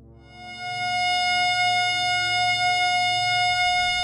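A single steady electronic tone, the F-sharp given by 720 cycles a second, swelling in during the first second and then held, over a low ambient music drone.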